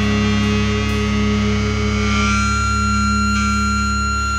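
Distorted electric guitar letting a chord ring out and sustain, with no drums, and high steady tones coming in about halfway through.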